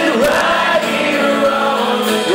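A band playing a song live, with voices singing over acoustic guitar and the rest of the band, heard from within the crowd.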